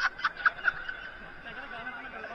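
A man laughing in a quick run of short chuckles, dying away within the first second into faint background noise.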